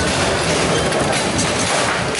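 Table football play clattering: rods sliding and banging in the table, and figures knocking the ball. Many quick clicks and knocks run together into a steady rattling din.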